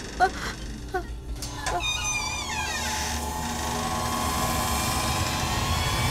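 Eerie horror-film score: a few short wavering cries, then high sliding tones and a sustained drone that slowly grows louder.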